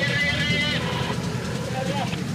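Low, steady rumble of an engine running at idle, with a brief high held tone during the first second.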